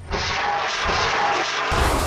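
Battlefield noise from war footage: a continuous rush of sound that cuts about 1.7 s in to a louder, fuller rumble with a deep low end.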